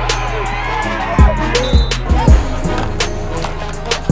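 Hip hop backing music with heavy bass drum hits and a rapped vocal.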